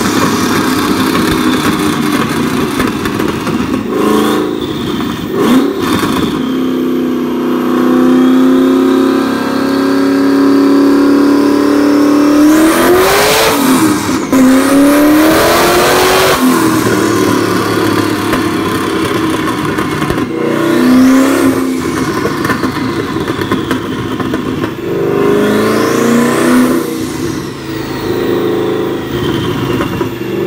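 Ford GT's twin-turbocharged 5.4-litre V8 revving on a chassis dyno, its note climbing and falling several times. Over it, the high whistle of the Precision 6466 ball-bearing turbos spooling rises and falls with each rev, and a few sharp cracks come from the exhaust about four to six seconds in.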